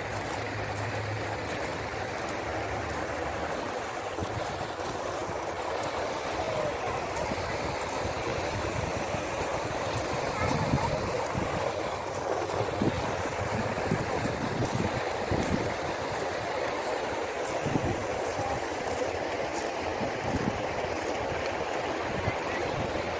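Steady rushing splash of lake fountain jets spraying water up, with people's voices in the background.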